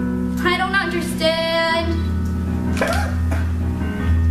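A young woman sings two phrases over instrumental accompaniment, the second a long note held with vibrato. The accompaniment carries on alone after about two seconds.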